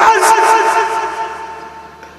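A man's loud, drawn-out cry into a microphone, carried through a PA. It turns into one held tone that fades away over about a second and a half.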